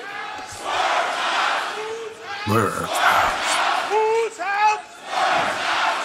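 Wrestling arena crowd cheering and chanting, the noise rising and falling in swells about every two seconds, with a few individual shouts in the middle.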